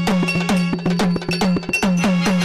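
Instrumental bhajan interlude: a tabla-style pair of hand drums played in a fast, even rhythm, the bass strokes bending down in pitch, over sustained harmonium chords.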